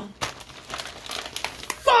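Crinkly plastic blind-bag packets rustling and crackling in irregular bursts as they are handled.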